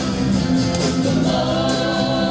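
Live worship band playing a song: singers' voices over acoustic guitar and band, held notes at a steady level.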